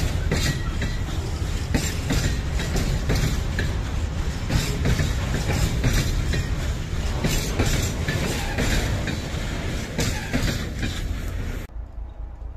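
A train of open-top freight wagons rolling past, the wheels knocking over rail joints in a dense, irregular clatter of clanks and knocks. The sound cuts off abruptly near the end.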